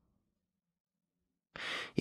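A man's short breath drawn in close to the microphone near the end, after about a second and a half of near silence.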